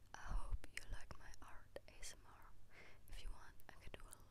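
A woman whispering softly and close to the microphone, with small sharp clicks between the phrases.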